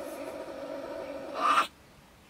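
Agitated stone marten (beech marten) giving one long, drawn-out call that ends in a louder, harsh burst about one and a half seconds in: an angry defensive scolding at a person close by.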